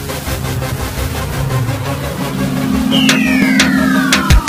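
Electronic intro music with a steady beat; about three seconds in, a high synth tone starts sweeping downward as it builds toward a drop.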